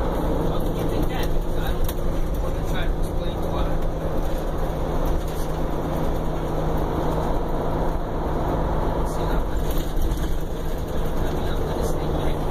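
Inside a Prevost coach bus on the move: the diesel engine drones steadily under a constant rush of road and tyre noise.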